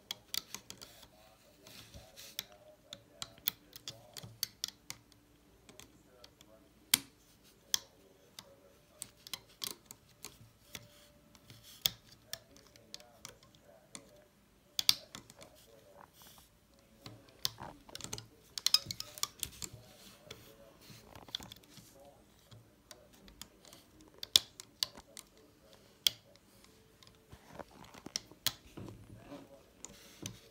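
Irregular sharp clicks and taps of a loom hook and fingers against the plastic pegs of a Rainbow Loom, as rubber bands are picked up and slipped back onto the pins.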